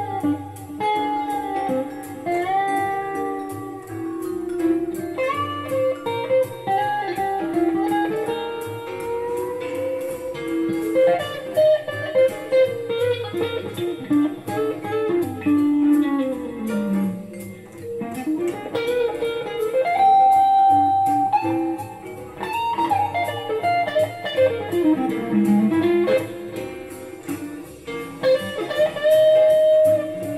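Electric guitar, a Squier Classic Vibe 60s Stratocaster with David Allen CS AustinBlues single-coil pickups, playing a blues lead line with string bends and sliding notes.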